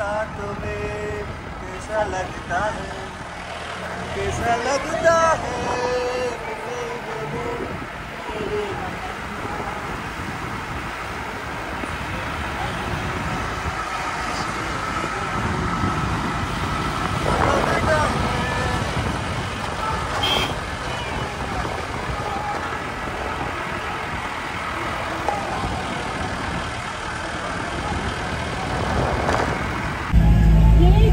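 A car's engine and road noise heard while driving, steady throughout. Voices come through in the first several seconds and again briefly about two-thirds of the way in.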